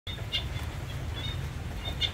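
A few short, high bird chirps over a steady low hum.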